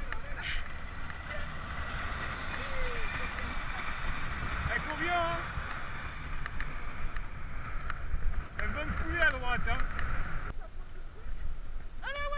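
Riding noise from a moving mountain bike: wind rumbling on the microphone with a steady hiss of tyres on a wet paved path. The hiss cuts off suddenly near the end, with a few short voice-like sounds in between.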